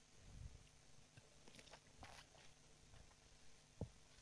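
Near silence with faint paper rustling, typical of Bible pages being turned to find a passage, and a single soft low knock near the end.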